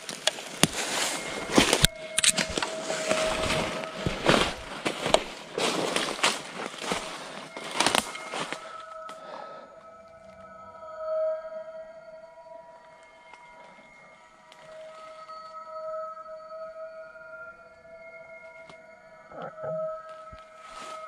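Footsteps crunching and snapping through dry leaf litter and twigs for about the first nine seconds, then they stop. Under them, and alone afterwards, a steady droning background-music tone that swells and wavers slightly.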